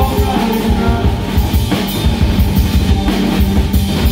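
Loud live band music with a steady drum-kit beat over bass and keyboards.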